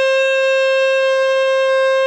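The Martin tenor saxophone, played with a Drake "Son of Slant" 7L mouthpiece and a Rico Royal #3 reed, holding one long, steady high note.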